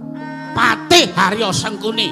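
Wayang kulit gamelan accompaniment holding steady sustained notes while a performer's voice breaks in with several short, strained vocal outbursts that swoop sharply in pitch.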